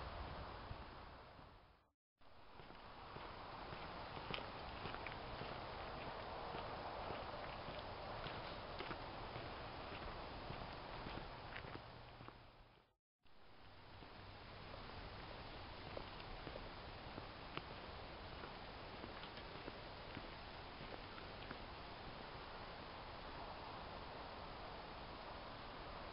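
Footsteps on a dirt and gravel trail, the walker carrying the microphone, over a steady hiss. The sound drops out completely twice for a moment.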